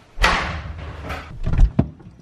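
A refrigerator door pulled open with a sudden rush of noise, followed by rattling and a couple of sharp knocks near the end.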